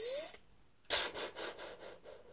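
Hissing whoosh sound effects for a fight blow. A long hiss with a short rising squeal cuts off just after the start, then about a second in a fresh hissing burst pulses about five times and fades away.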